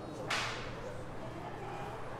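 A single sharp crack about a third of a second in, fading quickly in the room's echo, over a faint murmur of distant voices.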